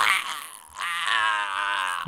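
A person's acted choking, strangled groan: it starts suddenly with a strained gasp, then turns into a long, wavering cry from about a third of the way in, the sound of being throttled.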